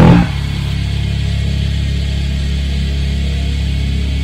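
Heavy rock bass and backing music end on a last hit just after the start. Then a steady low hum from the electric bass rig holds at an even level without fading.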